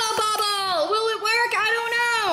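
A high-pitched voice-like sound held for a long stretch with no words, wavering up and down in pitch, with two light clicks near the start.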